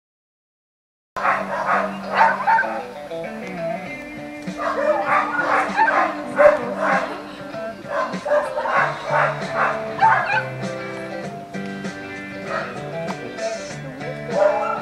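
Music starts about a second in after silence, with a dog barking in repeated bouts over it.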